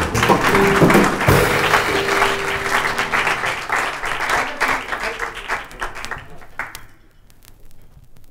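Live audience applauding as a jazz number ends, with the band's last notes ringing out under the clapping at first. The applause thins and fades away near the end.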